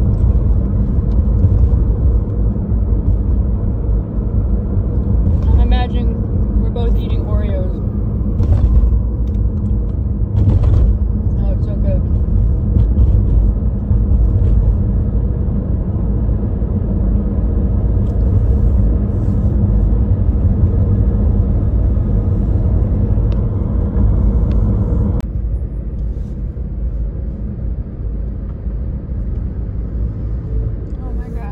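Car engine and road rumble heard from inside the cabin while driving, steady and low, with the level dropping about 25 seconds in.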